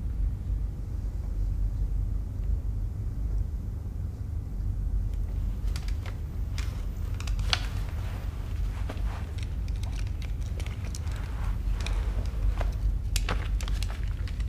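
Low, steady rumble of room ambience. From about halfway on, scattered small clicks and rustles sound over it.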